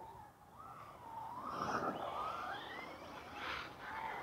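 Electric motor whine of lipo-powered RC short-course trucks, rising in pitch as a truck accelerates, with a loud rush of tyres on dirt about halfway through and another surge near the end.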